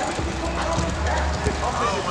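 Players shouting to one another during a football match on artificial turf, with a few short knocks from footsteps and ball touches.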